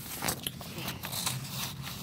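Paper sheets rustling and crinkling as they are handled, a string of short irregular crackles.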